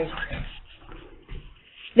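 Speech trailing off at the end of a sentence, then a pause of about a second and a half with only faint room noise.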